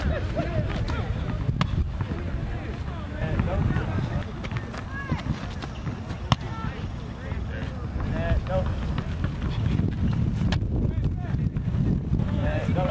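Wind rumbling on the microphone, with voices in the background that form no clear words, and one sharp tap about six seconds in.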